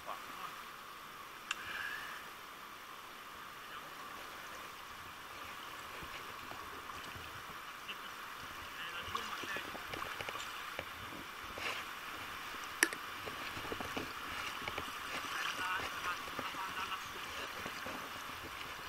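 River water flowing steadily past the wading angler, a continuous rush, with a few sharp clicks near the microphone, the loudest a little before the end.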